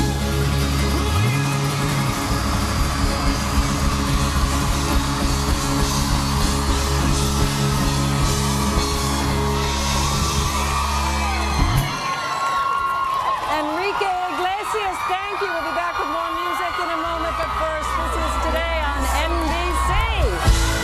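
Live pop band playing with a heavy bass and drum beat. About 12 seconds in the beat drops out, leaving a large crowd screaming and cheering, and the bass comes back in about 17 seconds in.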